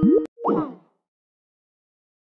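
A short electronic 'plop' of a Skype-style app sound, a quick rising blip at the tail of a chiming tone, over within the first second; then dead silence.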